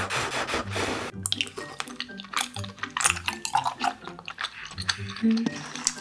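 A person blowing on a hot spoonful of jjajang tteokbokki for about a second, then close-miked wet chewing and mouth clicks of eating the rice cakes. Soft background music plays underneath.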